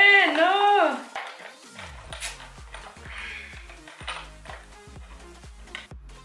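A girl's high-pitched laughter in the first second, then background music with a steady beat.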